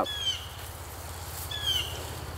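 A bird calling twice, each call a short, high chirp falling in pitch, about a second and a half apart, over a steady low rumble.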